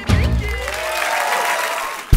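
Studio audience applauding as the band's last notes die away in the first second.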